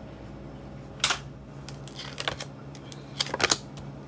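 Tarot cards being drawn and laid down on a glass tabletop: a few light slaps and clicks, one about a second in, a couple near the middle and a quick cluster near the end, over a low steady hum.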